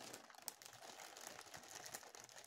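Faint crinkling of plastic packaging being handled, with one small click about half a second in.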